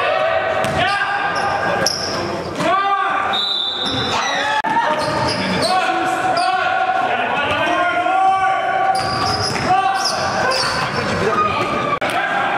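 Live basketball game sounds in a gym: the ball bouncing on the court in repeated sharp thuds, mixed with players' voices, all echoing in the large hall.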